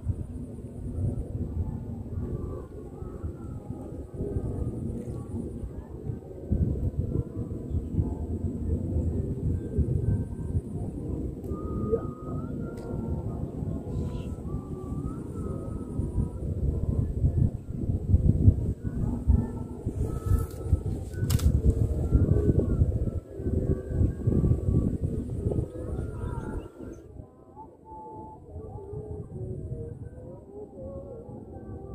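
Wind buffeting the microphone: a gusty low rumble that swells and drops, easing near the end, with faint wavering higher tones over it.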